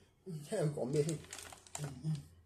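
A young man's voice making wordless vocal sounds that waver in pitch, with a few short rustling noises in the second half.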